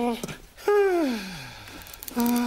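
A man's wordless cartoon voice: a brief hum, then a long vocal sound that slides steadily down in pitch and fades over about a second.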